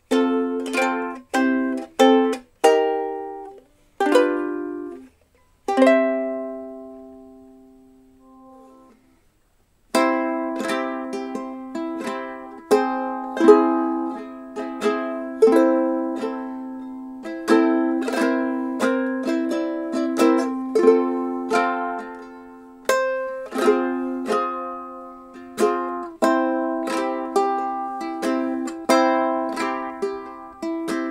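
A Takumi solid koa ukulele played solo: a few plucked chords, then one long note ringing out and dying away, a short pause, and from about ten seconds in a steady run of plucked notes and chords.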